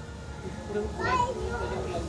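Background chatter of guests, children's voices among them, over a steady low rumble, with no close voice in the foreground.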